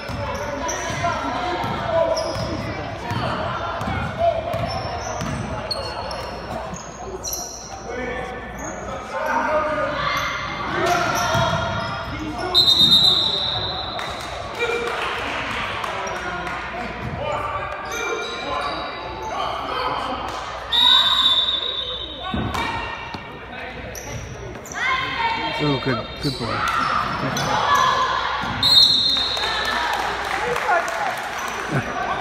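A basketball bouncing on a hardwood gym floor amid spectators' talk, echoing in the large hall. A few short high-pitched squeals cut through about 12, 21 and 29 seconds in.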